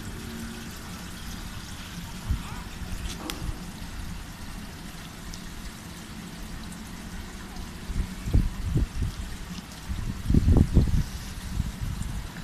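Steady trickling and flowing of swimming-pool water along the pool's edge. Low rumbles on the microphone break in twice in the second half, the loudest near the end.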